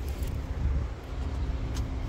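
Car-park background noise: a low, uneven rumble under a faint steady hum, with a few faint clicks.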